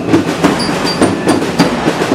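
Parade drum corps of bass and snare drums beating a steady marching rhythm, about three strokes a second.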